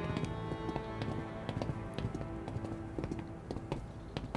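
Background score with held tones fading out, under the footsteps of two people walking in boots on a paved walkway: a quick, uneven run of sharp steps.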